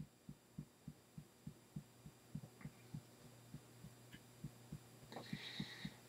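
Fingertips tapping on the collarbone point in EFT tapping: soft, even thumps about three to four a second, over a faint steady hum, with a brief rustle near the end.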